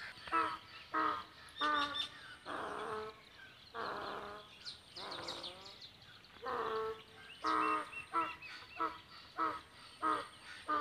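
Crows cawing over and over, a dozen or so short, harsh calls with a few longer, rougher ones among them, while small birds chirp faintly in the background.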